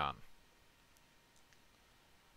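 Near silence after a spoken word ends, with a couple of faint, short clicks about a second and a second and a half in.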